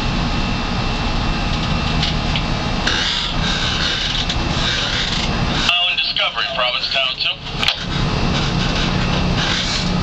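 Steady low drone and rumble of a boat under way, with wind on the microphone; it drops away briefly past the middle while a voice is heard, then returns.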